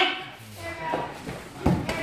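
A shout of "fight!" at the very start, then faint voices and a cluster of sharp thumps near the end from two sparring fighters striking and stepping on a padded mat.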